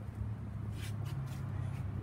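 A few soft rustles about a second in, over a steady low hum.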